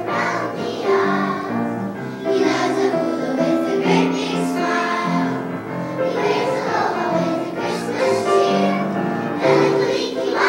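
A children's choir singing a Christmas song in held, steady phrases.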